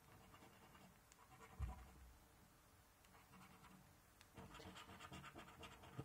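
Coin scraping the latex coating off a paper scratchcard: faint, quick rasping strokes in two short spells, the second from about four seconds in. There is a soft low bump at about one and a half seconds.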